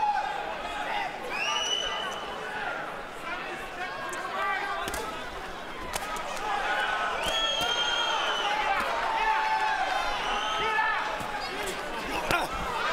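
Boxing arena crowd with men shouting over it, and a few sharp smacks of gloves landing on the body in the middle as the two boxers exchange punches up close.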